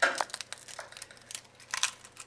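A raw egg cracked one-handed against the rim of a ceramic bowl: one sharp crack, then small crackles as the shell is pried apart, with a few more crackles near the end.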